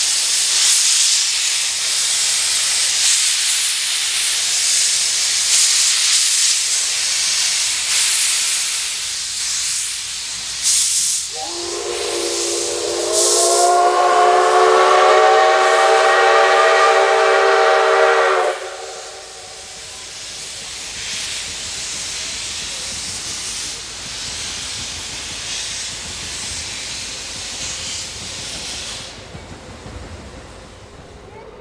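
C56 steam locomotive hissing loudly as it blows off steam, then sounding its steam whistle in one long blast of about seven seconds, beginning about eleven seconds in; after the whistle the steam hiss goes on more quietly.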